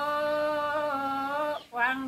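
A woman singing unaccompanied in the Dao folk style, holding long, nearly steady notes with small steps in pitch; the line breaks off briefly about one and a half seconds in and the next phrase begins.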